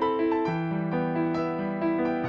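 Background piano music: a gentle melody of notes changing a few times a second over held lower notes.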